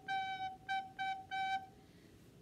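Soprano recorder playing the same note, G, four times in a row: a long note, two short ones and a long one, each separated by a light tongued break while the air keeps flowing.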